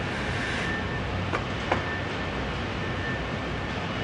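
James Burn BB313 Wire-O binding machine running, with a steady low hum and a thin constant whine. Two sharp clicks come close together about a second and a half in as the binding is worked.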